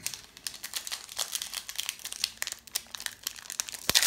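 Foil wrapper of a Yu-Gi-Oh! Mega Pack booster crinkling and crackling in quick, irregular bursts as it is torn open and handled, with one sharp click near the end.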